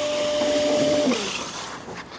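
Colortrac M40 large-format scanner's paper-feed motor running with a steady whine as the scanned sheet is ejected, then winding down in pitch and stopping about a second in.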